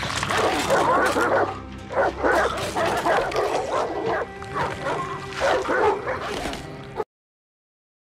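A pack of hounds snarling, barking and yelping as they maul a man, over a low, steady musical drone. Everything cuts off abruptly about seven seconds in.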